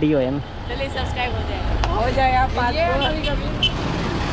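Boys' voices calling out over a school van's engine running with a steady low rumble.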